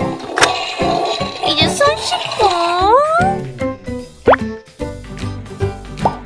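Light children's background music with cartoon sound effects: a swooping pitched sound partway through, then a quick rising bloop about four seconds in.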